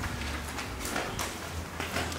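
Footsteps climbing a staircase: a few separate steps, roughly every half second.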